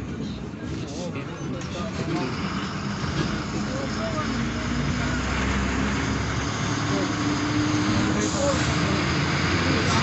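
Bus engine and road noise heard from inside the moving bus, growing gradually louder, with indistinct voices in the background.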